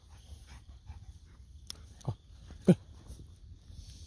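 Golden retriever giving two short vocal sounds, a weaker one about halfway and a louder one about two-thirds of the way in, each falling in pitch, over a steady chorus of night insects.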